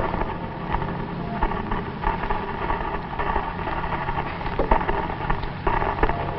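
A steady, noisy drone with a low hum and hiss, unbroken and even in level.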